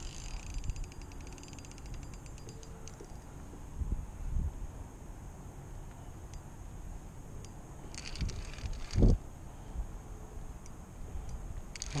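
Spinning reel ticking rapidly for the first few seconds while a hooked blue catfish pulls on the bent rod, over steady wind noise on the microphone. A few dull thumps of handling follow, the loudest about nine seconds in.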